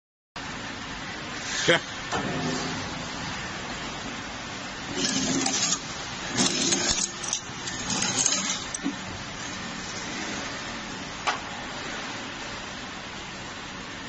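HYTW 340 conveyor meat cutter running steadily, with several louder noisy bursts in the middle as bone-in poultry leg quarters pass through its blades. A short spoken word comes early on.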